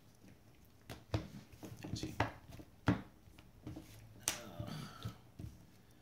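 Trading cards being snapped and set down on a playmat during play: a handful of sharp, scattered clicks.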